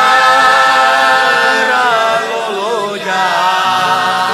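Hungarian Romani folk song: singing in long held notes, with a wavering, ornamented turn in the melody about three seconds in.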